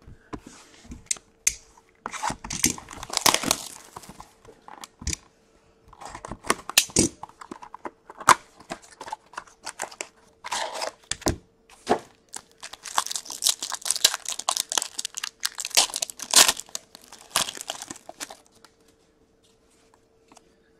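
Hands opening a 2019-20 Upper Deck Ice hockey card pack: cardboard and packaging tearing and crinkling, then cards being slid out and handled, in irregular rustles and sharp clicks. A faint steady hum runs underneath.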